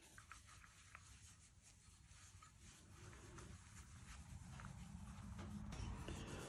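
Near silence: faint room tone with a few faint small ticks, and a low hum that slowly grows louder.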